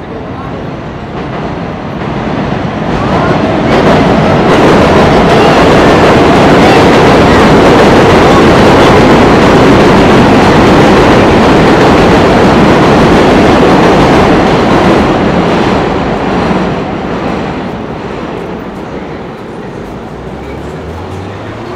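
7 train passing overhead on the elevated steel viaduct: a loud rumble of wheels on rails that builds over about three seconds, holds for about ten, then fades away over the last few seconds.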